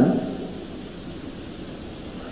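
A pause in a man's speech: the steady hiss of an old recording, after the last word trails off at the very start.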